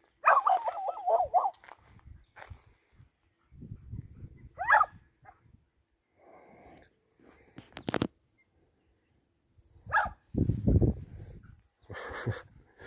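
A dog barking a few times, with short separate barks spread over several seconds. The first bark is drawn out and wavering, and single sharp barks come about five seconds in and again near the end.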